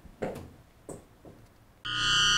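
Quiet room tone with a couple of faint short sounds, then near the end a loud, buzzy electronic chord starts suddenly: the show's logo sting.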